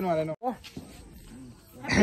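Speech only: people calling out loud Diwali greetings, with a short lull in the middle before the next shout begins near the end.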